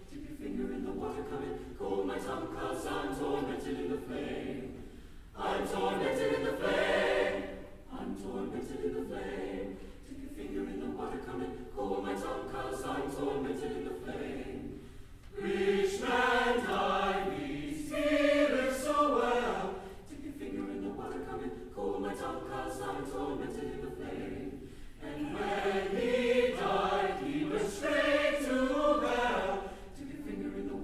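A choir singing, in phrases broken by short pauses every few seconds.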